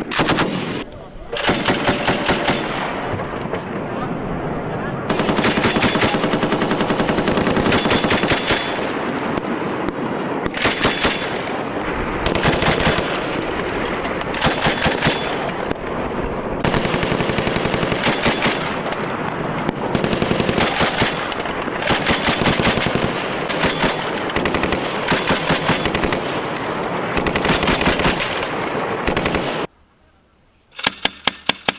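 Repeated bursts of automatic fire from belt-fed crew-served weapons, a bipod-mounted light machine gun and a vehicle-mounted Mk 19 40 mm automatic grenade launcher. Each burst is a rapid string of shots lasting one to three seconds, with short gaps between bursts.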